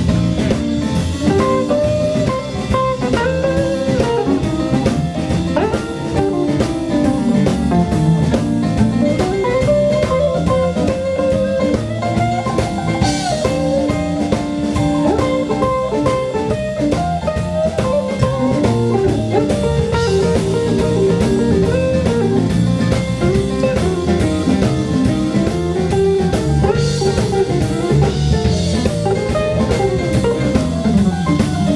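Live blues band playing an instrumental passage: electric guitar over drum kit, bass guitar and electric keyboard, with a steady beat.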